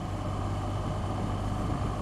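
2014 BMW R1200GS flat-twin boxer engine running steadily under way, with wind and road noise on a helmet-mounted camera.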